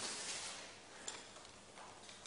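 Quiet classroom room tone: a brief rustle as pupils shift at their desks, then a single light click about a second in.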